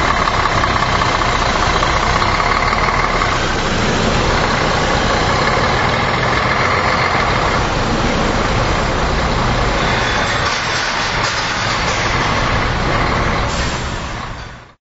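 Touring coach's engine running loud and steady as the coach pulls away.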